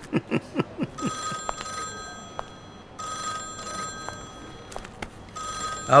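Telephone ringing in repeated bursts, three rings starting about a second in. It follows a quick run of short vocal sounds in the first second.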